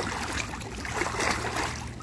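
Pool water splashing and churning as a swimmer's legs kick together in a butterfly (dolphin) kick, loudest a little past the middle.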